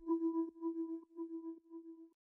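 A single held musical tone, quiet and pure with a few faint overtones, pulsing gently in loudness as it sustains.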